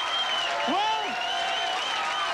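Audience applauding steadily, with voices heard over the clapping.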